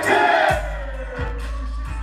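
Live hip hop music over a concert PA, heard from the audience. A voice on the mic trails off in the first half second, then a deep bass and kick drum come in, the kick landing about every two-thirds of a second.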